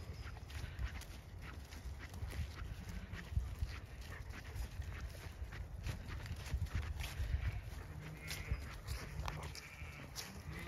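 Faint bleating from Zwartbles sheep near the end, a few short pitched calls, over a low, uneven rumble on the microphone.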